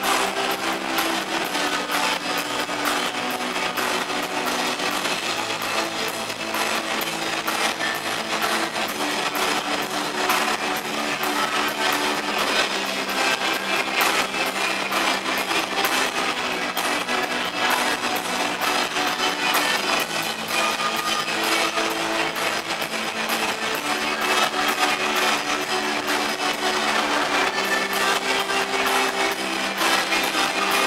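Live rock band playing loudly: heavily distorted electric guitar over drums, steady throughout.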